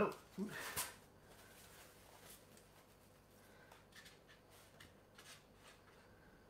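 Faint, scattered rustles and light scrapes of packaging being handled as a small statue is taken out of its box, with one louder handling noise just after the start.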